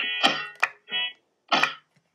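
A few short, separate musical notes, broken up by sharp clicks and a brief noisy burst near the end, rather than continuous music.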